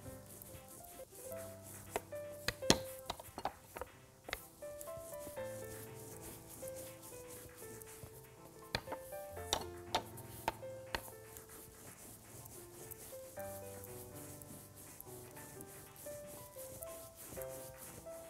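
Quiet background music with a slow melody of single notes, over the rubbing of a rolling pin across dough on a countertop. A few sharp knocks stand out, the loudest about three seconds in and again around ten seconds.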